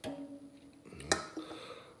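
Aluminium drink cans being handled on a countertop: a faint click at the start, then a single sharper knock about a second in.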